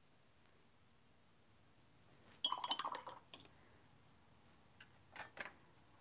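Light clinking of painting tools against glass and a paint palette: a quick cluster of clinks with a short ring about two seconds in, then a few softer taps near the end, as paintbrushes are knocked against the water jar and set down.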